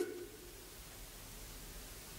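Faint steady hiss of room tone, with the tail of a voice dying away in the first moment.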